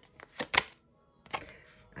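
Tarot cards snapping and slapping as a card is pulled from the deck and laid down in the spread: two sharp snaps close together about half a second in, then a softer tap a little later.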